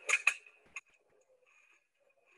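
Two quick clicks in succession, then a lighter single tick, from an HDPE drainage pipe being handled into the clamp of a butt-fusion welding machine.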